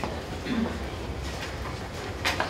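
Room tone of a crowded meeting room during a pause: a steady low hum with faint murmuring voices and small rustling noises.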